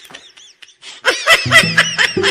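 A burst of rapid, high-pitched laughter starts about a second in, with background music and its bass line coming in underneath.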